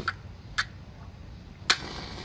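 A lighter being struck in attempts to light a candle: three short clicks, the sharpest and loudest near the end.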